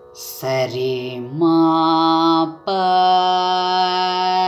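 A singer's voice in Carnatic style holding three long notes one after another, each higher than the last, over a steady drone.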